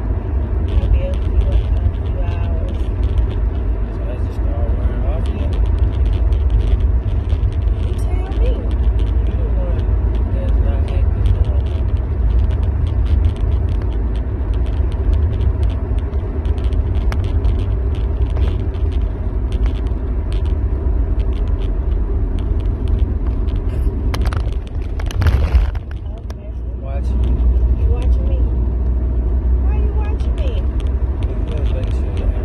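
Road and engine noise inside a moving car's cabin: a steady low rumble. About 24 seconds in comes a brief louder rush, then a short dip before the rumble returns stronger.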